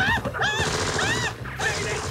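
Film sound effects of rapid gunfire with bullet ricochets: a quick run of short whines that rise and fall in pitch, several a second, over a low rumble.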